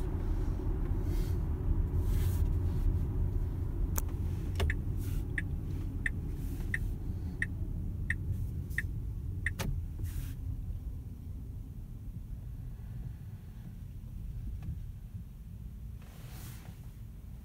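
Tyre and road rumble inside a Tesla Model X cabin, fading as the car slows to a stop in traffic. In the middle comes a run of about eight even ticks, under two a second, lasting about five seconds.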